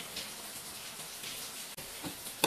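Faint, steady rustle of fabric being handled.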